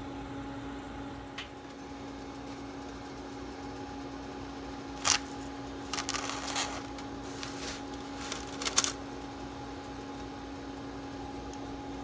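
A few short crinkles and clicks of parchment paper and a knife as a knife is pushed into a freshly baked loaf in a parchment-lined cast-iron skillet, to test whether the bread is done. Under them runs a steady low hum.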